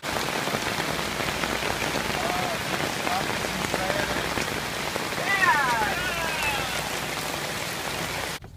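Steady rain falling on grass, gravel and pavement, an even hiss.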